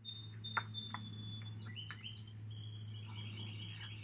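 A songbird singing a run of short, high whistled notes that step up and down in pitch, over a steady low hum, with two soft clicks in the first second.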